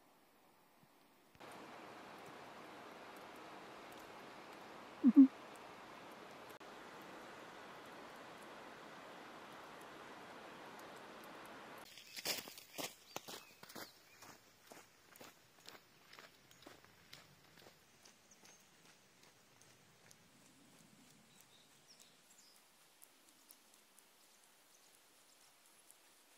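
Footsteps crunching on compacted snow in boots fitted with ice traction spikes, about two steps a second, fading as the walker moves away. Before the steps there is a faint steady outdoor hiss, broken once by a short low call about five seconds in.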